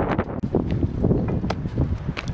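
Wind buffeting the camera microphone in a steady low rumble, with a few footsteps on a paved road after a cut about half a second in.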